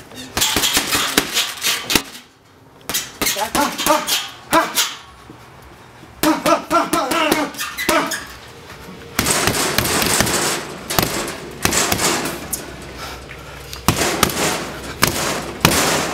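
Boxing gloves hitting heavy punching bags in quick flurries of sharp slaps. The combinations are broken by short pauses.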